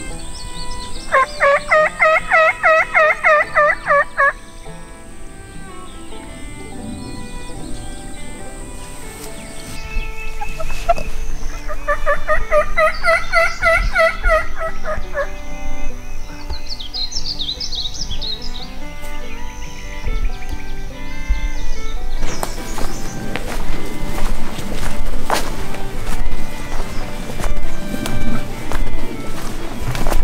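Two turkey gobbles, each a rapid rattling run of about three seconds, the first just after the start and the second about eleven seconds in.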